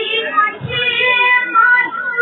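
A young woman singing a Sambalpuri kirtan devotional melody in a high voice into a microphone, drawing out long held notes in the second half.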